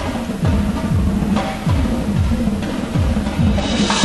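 Percussion ensemble playing drums, with low notes that slide downward again and again. A loud crash comes near the end.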